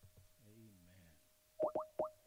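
A few quick rising electronic blips near the end, over a faint steady tone.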